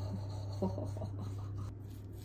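Silicone pastry brush stroking and dabbing oily chili paste onto chicken wings on a metal baking tray, a soft rubbing with a few short strokes, over a steady low hum.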